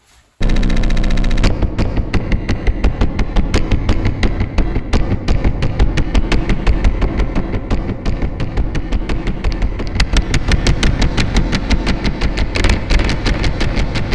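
Hand tapping and scraping on a fuzz pedal's metal enclosure, picked up by a piezo contact mic inside it and pushed through harsh octave-up fuzz distortion and effects pedals. The result is a dense wall of distorted noise that starts abruptly, with a rapid run of clicks from about a second and a half in.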